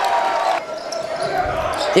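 A basketball being dribbled on a hardwood gym floor, with a low thud about one and a half seconds in, over the steady noise of players and crowd in the gym.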